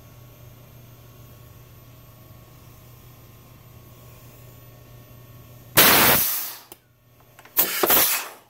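Pneumatic grommet press venting compressed air: against a steady low hum, a loud sudden rush of exhausting air about six seconds in that tails off within a second, then a second, shorter blast of air about a second and a half later as the ram is raised.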